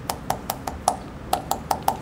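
Fingers thumping the front of the throat about nine times while the mouth holds a vowel shape. Each thump makes a short hollow pop with a faint pitch. That pitch is the vowel's own resonance, so the vowel can be heard without any voicing.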